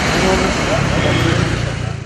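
Voices of a crowd in the street, half-buried under a loud steady rush of noise, which fades near the end.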